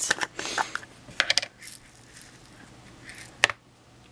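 Small plastic jar of sequins and clay embellishments being opened and tipped into a palm: light rattling and clicking of the small pieces, with a quick cluster of clicks about a second in and one sharp click near the end.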